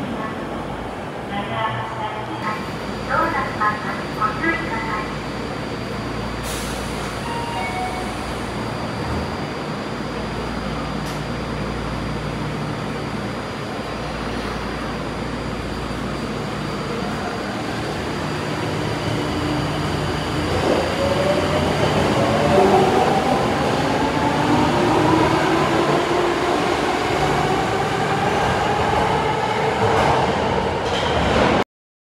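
Tokyo Metro Marunouchi Line 02 series subway train in an underground station: a low running rumble, then from about twenty seconds in a rising electric motor whine, several tones climbing together as the train accelerates.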